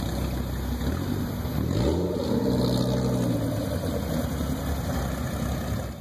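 Dodge Viper V10 engine running as the car pulls away, the pitch rising sharply about two seconds in as it revs and accelerates, then holding before fading near the end.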